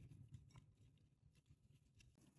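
Near silence, with a few faint, soft ticks as fingers crumble a caked lump of onion powder over a glass bowl.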